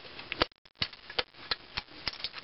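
Light clicks and knocks of cast-iron carburetor mixer parts being handled and knocked together, about five sharp taps spread over two seconds.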